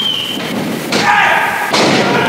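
A wrestler thrown to the wrestling-ring mat in a takeover, the body landing with a thud about a second in.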